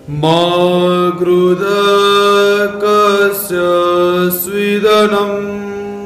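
A man chanting a mantra in long, drawn-out held notes on a nearly steady pitch, the phrase fading away near the end.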